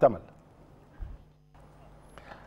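The end of a man's spoken sentence, then a near-silent gap. In the gap there is one soft low bump about a second in, followed by a faint steady low hum.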